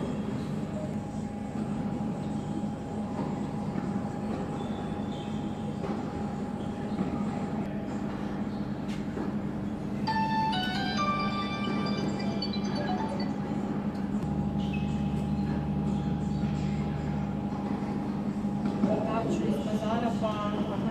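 Steady mechanical hum. About ten seconds in, a short run of high tones steps down in pitch, and a deeper low rumble joins the hum for a few seconds after that.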